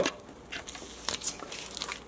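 Light crinkling and rustling of a plastic bag of thawed cod fillets being handled, with a few soft clicks.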